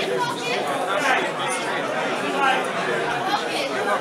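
Speech with overlapping chatter: several voices talking at once in a room.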